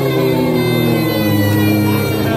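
A live folk band, with acoustic guitar, fiddle, frame drum and horn, playing long held notes.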